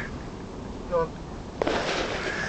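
Rushing handling noise on a handheld camera microphone, with a sharp knock near the end as the camera is swung up. A short vocal sound about a second in.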